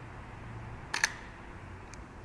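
Canon EOS R mechanical shutter firing about a second in, a sharp double click, with a fainter click near the end.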